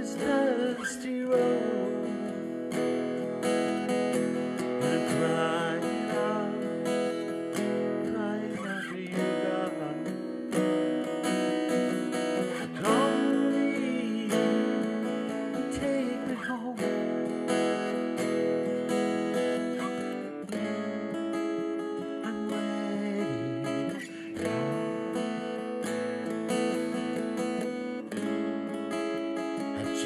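Acoustic guitar strummed in a steady rhythm, with a man singing a country-gospel song over it into a close microphone.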